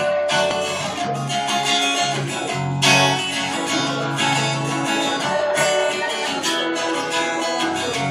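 Acoustic guitar strumming chords in a steady rhythm: the instrumental intro of a song.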